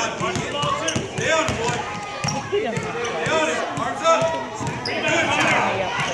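Basketballs bouncing on a hardwood gym floor, with one sharp bounce standing out about four seconds in, among voices talking and calling out.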